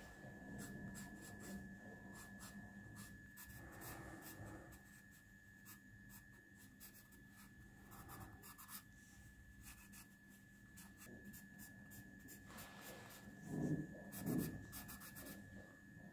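Wooden graphite pencil sketching on sketchbook paper: faint, scratchy strokes in quick runs. Near the end come two louder dull knocks, a little under a second apart.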